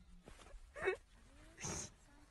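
A person's voice in two short bursts: a brief pitched cry or laugh about a second in, then a breathy burst near the end.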